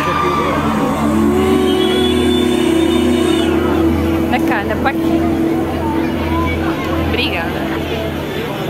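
Concert sound from the crowd: a steady low bass drone and a long held synth note from the stage PA, under crowd chatter. A few short high calls or whistles from the crowd come about four and a half and seven seconds in.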